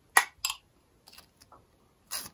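Hot dogs in toasted buns being handled and topped on a wooden cutting board: two short crisp crackling clicks in the first half second, the first the loudest, then a few fainter ticks.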